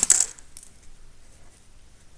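A plastic pen set down on a hard desk and another pen picked up: a quick clatter of sharp clicks right at the start, then faint scratching of a pen writing on paper.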